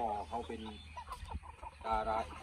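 Chickens clucking under a man's speech.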